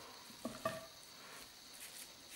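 Faint squishing of gloved hands scooping a soft cheese filling out of a glass bowl and pressing it into ground meat in a foil loaf pan, with two short squishes about half a second in.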